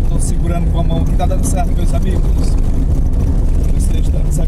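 A motor vehicle driving on an unpaved dirt road: a steady, loud low rumble of engine and tyres on the rough surface, with a few brief high rattles or hisses about once a second.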